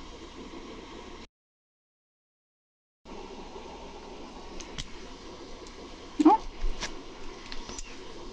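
Quiet room tone that drops out to dead silence about a second in for nearly two seconds. After that come a few faint, sharp clicks of alcohol markers being handled and swapped, plus a short spoken "oh".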